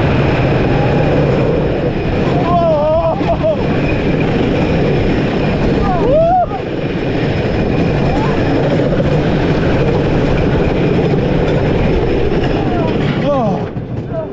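Wooden roller coaster train running fast along the track, a loud continuous rumble and rattle of the wheels on the wooden structure. Riders cry out in short rising-and-falling screams about two to three seconds in, again around six seconds, and near the end.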